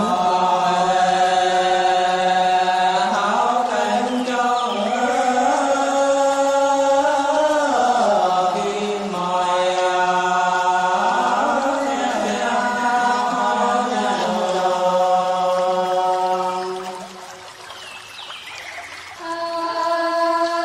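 Women singing soóng cọ, the Sán Chỉ folk love-song style, in long drawn-out notes that slide from pitch to pitch, over a low steady hum. The singing fades briefly near the end, then starts again.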